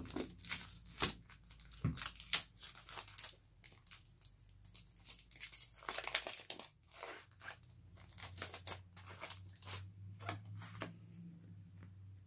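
Foil wrapper of a Pokémon TCG booster pack crinkling and being torn open by hand, a dense run of small irregular crackles, followed by cards being handled.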